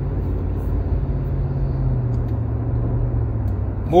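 Steady low road and engine rumble inside the cabin of a moving car, with a faint hum that fades out shortly before the end.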